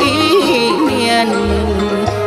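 A man singing a Vietnamese song: a drawn-out, ornamented note with wavering pitch over an instrumental backing track with a bass line.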